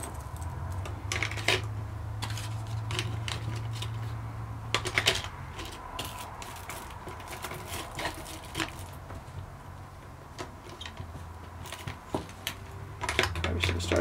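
Small survival-kit items being handled and packed into a water bottle: irregular clicks and taps of small plastic and metal pieces, with light rustling of little plastic packets. A low hum sits under the first few seconds.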